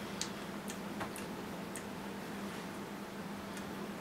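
A few faint, irregularly spaced clicks over a low steady hum, mostly in the first two seconds.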